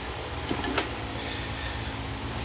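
A steady low hum with one or two faint clicks, in a pause between spoken words.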